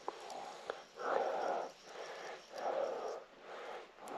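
A person breathing close to the microphone: three soft breaths, about a second and a half apart.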